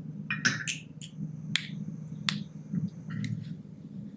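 A handful of sharp clicks and taps, about six in four seconds, from small hard tools and plastic parts being handled at a workbench, over a steady low room hum. A faint high steady whine runs through the middle.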